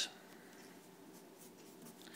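Faint scratching of a pen on paper as a box is drawn around a written answer.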